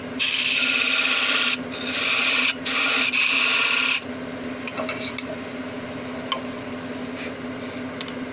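A turning tool cutting into an oak napkin ring spinning on a wood lathe, in three cuts of a second or so each with short breaks between them. About four seconds in the cutting stops, leaving the lathe's steady motor hum.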